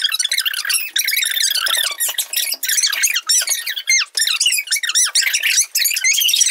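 A dense run of rapid, high-pitched squeaks and chirps whose pitch wavers quickly up and down, with no low sound beneath them.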